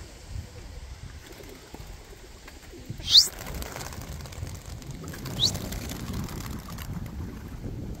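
A flock of domestic pigeons taking off and flying up from a loft roof, wings flapping, with wind on the microphone. Two short rising whistles cut through, a loud one about three seconds in and a fainter one a couple of seconds later.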